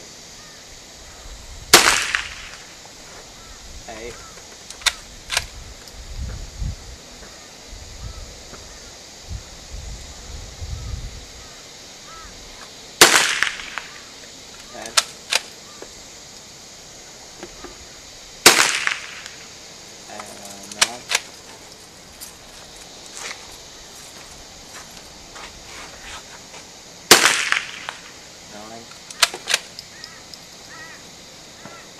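Scoped rifle fired four times, one loud crack every five to eleven seconds, each with a short echoing tail. Fainter sharp cracks and clicks come between the shots.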